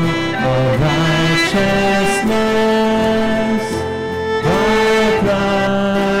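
Congregation and worship band singing a slow hymn, held sung notes over instrumental accompaniment with strings.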